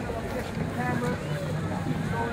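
Wind rumbling on the microphone, with indistinct talking over it.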